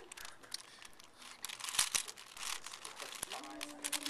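A 5x5 Rubik's cube being turned rapidly by hand: a quick, irregular run of plastic clicks and rattles as its layers twist. A short voice sound comes near the end.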